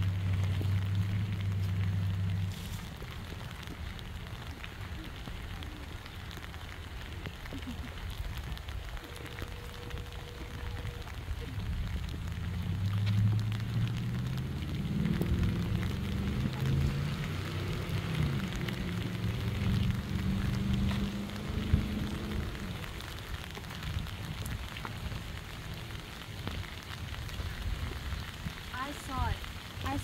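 Steady rain falling, with a low drone that comes in briefly at the start and again through the middle.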